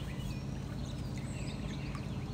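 Outdoor background: a steady low hum with faint, scattered bird chirps.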